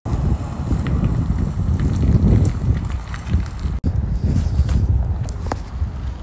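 Wind buffeting a phone's microphone: a steady low rumble with one brief dropout just before the four-second mark.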